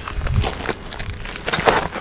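Rock pick scraping and chipping into loose gravel around a half-buried rock: crunching stones and a few short sharp knocks, with a denser crunch near the end.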